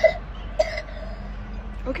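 A woman clears her throat: two short rasps about half a second apart, the second trailing off into a soft hum.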